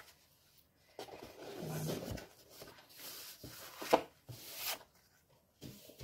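Sheets of patterned paper and card rustling and sliding as they are handled on a craft mat, with a plastic bag crinkling. A sharp knock about four seconds in, as something is set down on the table.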